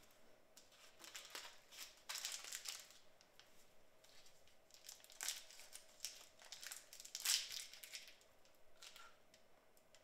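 Faint crinkling and rustling of a wrapper being handled, in irregular short bursts; the loudest come about two, five and seven seconds in.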